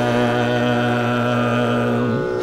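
Carnatic classical music: a male singer holds one long, steady note over the accompaniment.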